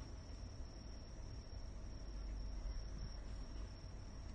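An insect singing: one steady, unbroken high-pitched trill, over a faint low rumble.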